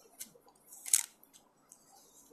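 Playing cards being handled on a table: a few short, crisp clicks and rustles, loudest about a second in.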